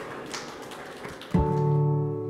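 Low room noise with a few faint taps, then, about a second and a half in, a sustained chord of bell-like tones starts suddenly: the closing logo music sting.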